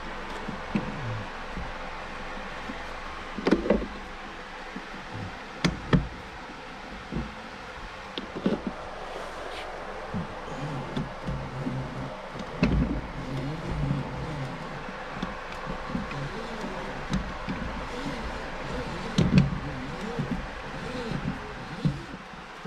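Scattered clicks and knocks of a flux-core welding-wire spool and its wire being handled in a MIG welder's wire-feed compartment as the wire is drawn back out of the drive rolls, over a steady low hum.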